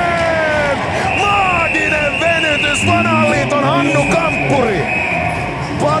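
Excited Finnish TV commentary over ice hockey arena crowd noise, with a steady high-pitched tone held for about four seconds in the middle.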